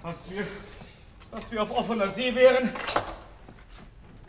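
A man's voice on stage making short sounds without clear words near the start, then a longer wavering vocal stretch of about a second, followed by a single sharp knock about three seconds in.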